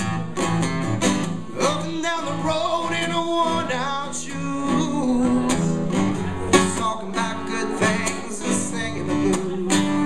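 Acoustic guitar played live, steady strummed chords with melodic lines running through them.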